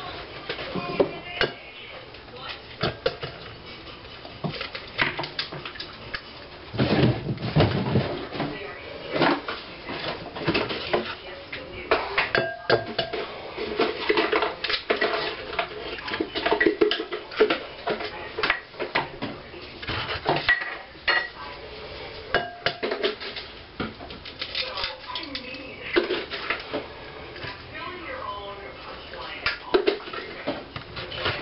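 Irregular clinks and knocks of kitchen utensils and dishes against a glass mixing bowl while ingredients are handled and mixed.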